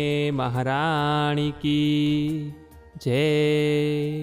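Male voice chanting a devotional invocation in long, drawn-out held notes: two sustained phrases with a short break just before three seconds in.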